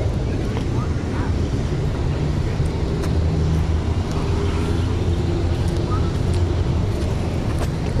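Steady low rumble of motor traffic with a vehicle engine running, a little stronger in the middle.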